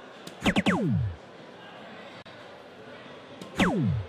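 DARTSLIVE soft-tip dart machine's scoring sound effects. About half a second in, a dart hits the board with a tap and the machine plays three quick falling electronic sweeps for a triple 20. Near the end, a second dart lands and a single falling sweep plays for a single 5.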